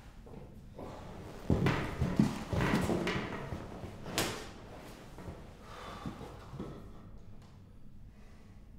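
Knocks and rustling as a person shifts and pushes himself up off the floor among a collapsed metal folding chair and a beanbag: a run of clatter starting about a second and a half in, then a few faint knocks.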